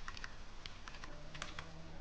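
Faint, irregular clicks of computer keyboard keys being pressed.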